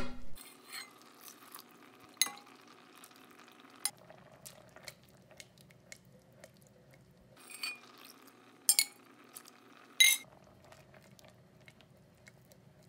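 A silicone spatula stirring risotto in a stainless steel pot: quiet wet stirring with a handful of sharp taps of the spatula against the pot, the loudest near the end.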